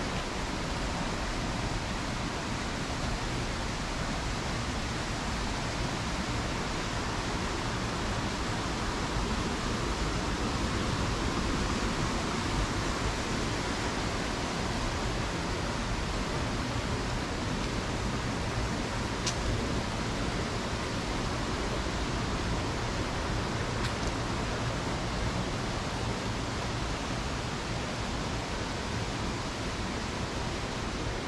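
Steady, even rushing noise throughout, with no distinct events apart from a faint click about two-thirds of the way in.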